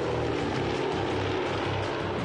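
Canadair CL-215 water bomber flying, its propeller engines giving a steady drone.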